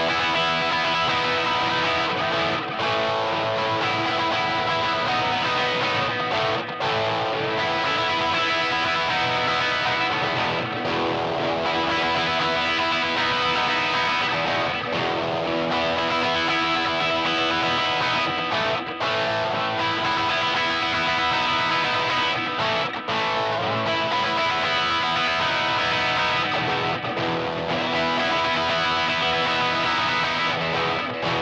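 Telecaster-style electric guitar played continuously through a DSM Humboldt Simplifier DLX amp emulator, mixing strummed chords and picked lines, with a few very brief breaks.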